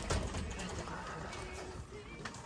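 Footsteps walking on a hard store floor, with a faint murmur of voices in the background.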